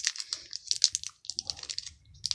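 Foil wrapper of a Pokémon trading-card booster pack crinkling and crackling as it is squeezed and pulled at to tear it open: a quick, irregular run of small crackles.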